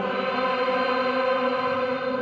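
A choir chanting liturgical music in long held notes, the voices changing pitch together near the start and again near the end.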